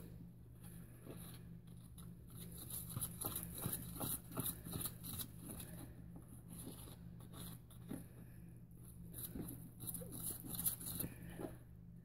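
Faint, irregular scraping and clicking of a thick baking-soda cleaning paste being stirred and whipped into a foam in a plastic tub, over a steady low electrical hum.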